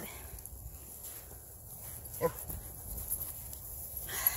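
A low steady rumble with one short yip from a small dog about two seconds in.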